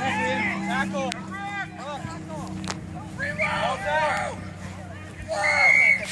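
Young players and spectators shouting and calling out over each other during a youth rugby match, with the loudest, highest call near the end. A steady low hum sits underneath and fades about halfway through.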